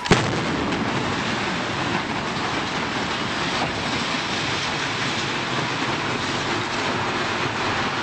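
A high-rise building coming down in a demolition: a sudden crack, then a continuous rumbling roar of the collapse and falling debris. It holds steady for about eight seconds and cuts off abruptly.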